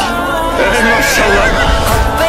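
A horse whinnies with a wavering call lasting about a second, over background music.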